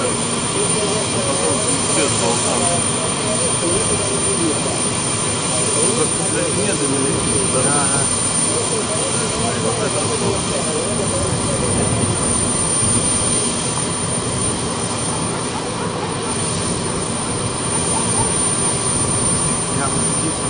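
Steady, distant jet roar of a Tupolev Tu-154 tri-jet airliner descending on approach to land.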